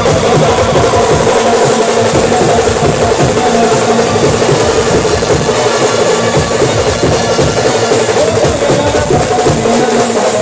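Live Indian procession band music blasting through a truck's stacked loudspeakers, with a melody over fast, dense drumming from a hand-held drum.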